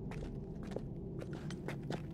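Quiet footsteps of a few people walking on a dirt path: soft, irregular steps over a low hum.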